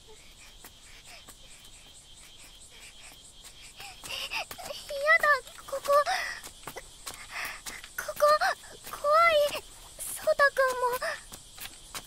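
Steady high insect chorus in the background, with a child's voice speaking from about four seconds in.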